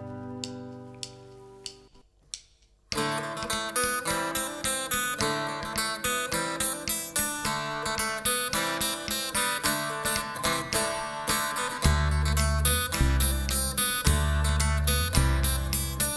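A held chord fades out, then after a brief pause an acoustic guitar starts playing a steady rhythm about three seconds in. A double bass joins with long low notes about twelve seconds in.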